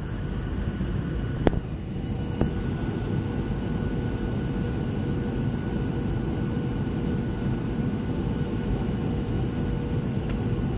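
Steady cabin noise of a jet airliner on its landing approach: engine drone and airflow rush with a faint steady whine. A sharp click sounds about a second and a half in.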